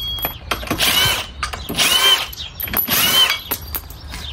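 Cordless power wrench undoing a car's wheel bolts: three short runs about a second apart, each a whine that rises and falls.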